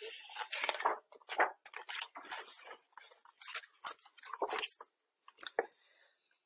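Paper rustling and crackling as a large picture book's pages are handled and turned, in a string of short irregular crinkles and clicks.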